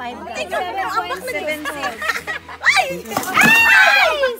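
Several people talking at once in lively chatter, the voices getting louder and higher in a loud exclamation near the end.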